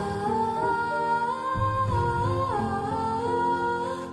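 A woman's voice singing a slow melody, held notes sliding between pitches, over a soft low accompaniment.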